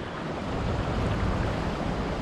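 Sea surf washing on a beach, a steady rush of breaking water, with wind rumbling on the microphone.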